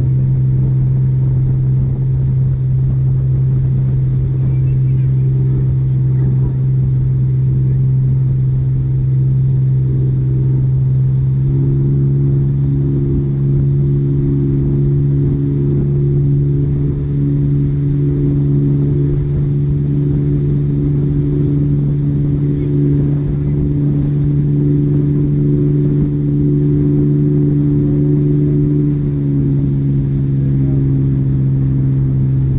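Motorboat engine running steadily under load while towing a rider, a constant low drone over a rumble. About twelve seconds in its note rises slightly and grows stronger as the throttle is eased up.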